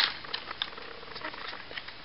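Plastic ratchet waist joint of the Dx Dino Charge Megazord toy clicking as the upper body is turned: one sharp click at the start, then faint scattered ticks.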